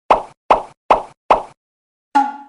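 Cartoon 'pop' sound effect played four times in a quick even rhythm, about two and a half pops a second, each a short sudden pop that dies away fast, as the rice-ball pictures pop onto the screen.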